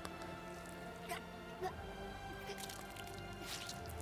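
Quiet, tense film score from the episode, with held notes, broken by a few short clicks and wet-sounding ticks.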